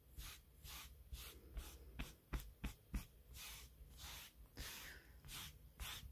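Faint rubbing of a hand over damp thick-pile velvet, stroked back and forth about three times a second to work crushed pile back into line, with a few light taps in the middle.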